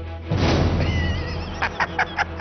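A horse whinny sound effect over background music: a wavering high cry about a second in, then a run of quick pulses near the end.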